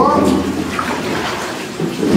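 Tap water running steadily into a stainless steel sink basin as vegetables are washed by hand.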